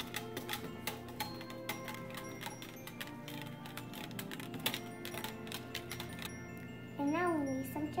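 Wire whisk clicking and tapping rapidly against the sides of a plastic measuring jug as it stirs liquid jello, over background music. A child's voice comes in near the end.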